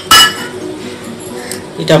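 A glass bowl clinks sharply twice against a stainless steel mixing bowl right at the start, the metal ringing briefly. A woman's voice comes in near the end.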